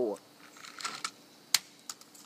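Plastic toy truck clattering off a wooden deck railing: a few light clicks and rattles, then one sharp knock about a second and a half in, and a smaller tap just after.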